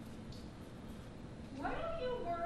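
A high-pitched, childlike voice starts about a second and a half in, rising in pitch, over faint room tone.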